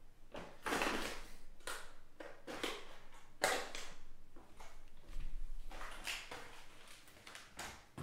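Trading-card packs and cards being handled, making a series of short, irregular rustles and scuffs, with one sharper one about three and a half seconds in.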